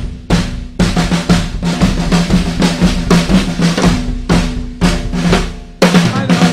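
Sawtooth Command Series drum kit played with sticks: a fast, loud run of drum strikes, about four or five a second, with the drums ringing underneath and a heavy accent near the end.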